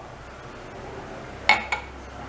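Empty drinking glass set down on a hard counter: two quick clinks about a second and a half in, the first ringing briefly.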